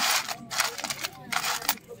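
Costume jewellery in a metal tin jangling and clinking as a gloved hand rummages through it, in a few short bursts, the loudest at the start.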